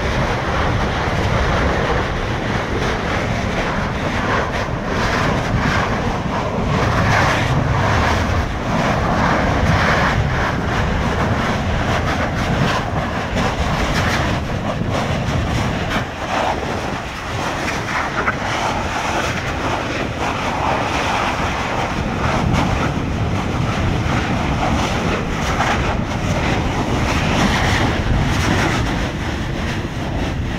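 Kilauea fissure vents erupting, lava fountains spattering: a steady, loud, rushing noise shot through with frequent crackles.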